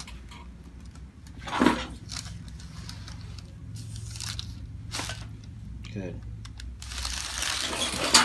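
A chiropractic neck (cervical) adjustment: a single sharp crack of the joint about five seconds in, after a brief louder rustle near the start as the patient's head is set in position on the table.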